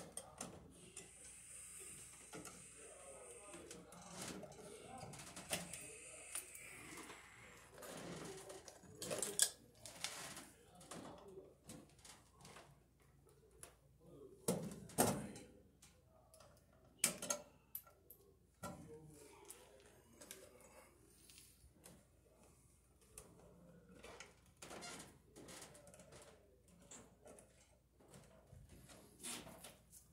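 Scattered clicks, taps and rustles of electrical wires and pliers being worked at a metal junction box. The sharpest knocks come around a third and a half of the way through, with quieter handling noise between.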